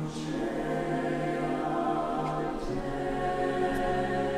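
Mixed choir singing held chords with orchestra accompaniment. A sung 's' consonant hisses briefly at the start.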